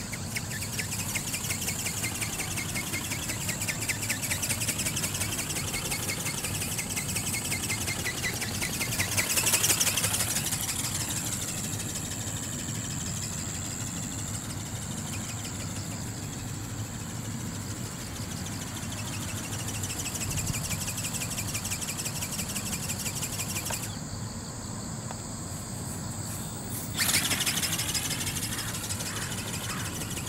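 A robot snowy owl ornithopter in flight: its small brushless motor and geared flapping drive buzz steadily as the wings beat, with the sound sweeping as the bird moves across the sky. It is loudest about a third of the way in. The high buzz drops away for a few seconds near the end, then comes back suddenly.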